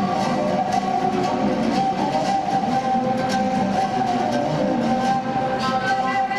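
Long wooden folk flute playing a Moldavian csángó dance tune in a held, piping line, over a steady beat on a large double-headed drum.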